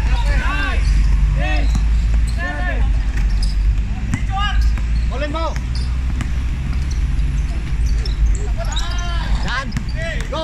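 A basketball being dribbled on an outdoor court, with players' short high-pitched shouts coming in quick runs, a lull in the middle, and more shouts near the end. A steady low rumble sits underneath.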